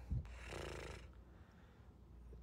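A person breathes in sharply through the nose, a sniff of about half a second close to the microphone, just after a soft low bump.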